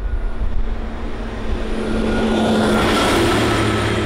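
A school bus driving past: steady engine hum and road noise that swells and brightens in the second half as it passes close.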